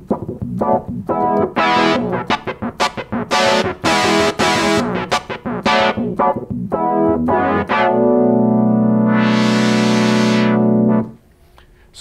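Sequential Circuits Prophet-5 analog synthesizer played as a run of short notes, its filter cutoff opened and closed by a foot pedal so the tone brightens and darkens. Near the end a held sound swells bright and falls dark again, then stops about a second before the end.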